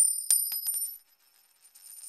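A bright, high metallic ring with a few sharp clicks, coin-like, struck at the start and fading out within about a second. A faint high jingling rattle creeps back in near the end.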